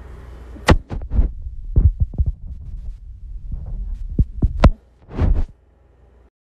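A run of irregular knocks and bumps over a low steady hum, the sharpest about two thirds of a second in and again past four and a half seconds, then a short soft rustle near the end: handling noise around the recording setup.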